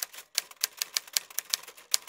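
Typewriter keystroke sound effect: a run of sharp key clacks, about six a second and unevenly spaced, as text is typed on.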